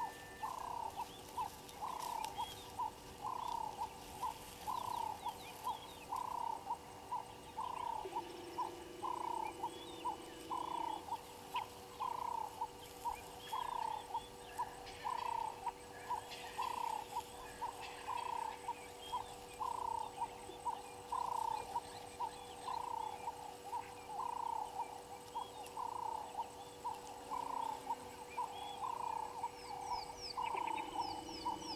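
A frog calling in a steady series of short, identical notes, a little more than one a second, with faint bird chirps behind.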